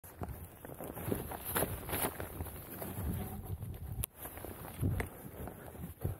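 Skier shuffling about on skis in snow: irregular crunching and scuffing, with one sharp click about four seconds in.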